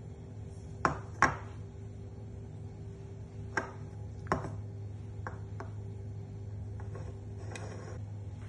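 Metal spoon clinking against a ceramic bowl as soft cheese is scooped out: a few sharp clinks, the two loudest about a second in, two more around four seconds, and lighter taps later, over a steady low hum.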